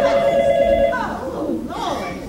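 A phone ringing with a steady, trilling two-tone ring that stops about a second in.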